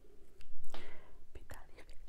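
A woman's breathy whisper, loudest about half a second in, with a few soft sticky clicks from fingers tearing a piece of fufu.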